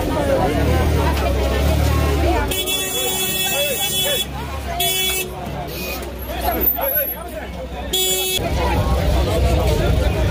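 A vehicle horn honks three times, first one long blast of nearly two seconds, then two short ones, over the steady chatter of a dense crowd. A low engine rumble runs under the crowd for the first couple of seconds.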